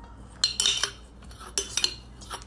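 Metal spoon clinking and clattering against a stainless steel mixing bowl in two short bouts, about half a second in and again near the end.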